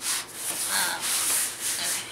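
Hands sliding and smoothing a large sheet of book cloth across a paper trimmer's bed: a rubbing rustle of cloth on the board, swelling and fading in several long strokes.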